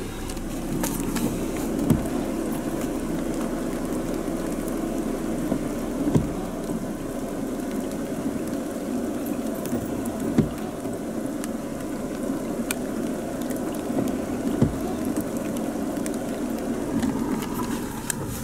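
Steady road and rain noise inside a moving car, with a short thump about every four seconds.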